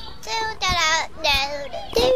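A high, child-like cartoon voice singing or vocalising without words. It makes three short wavering notes in quick succession.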